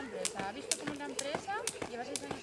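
Jump rope skipping, the rope slapping the dirt ground in a steady rhythm of about two sharp strikes a second.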